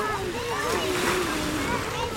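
Background chatter of several people's and children's voices, none close enough to make out words, over a steady wash of outdoor noise.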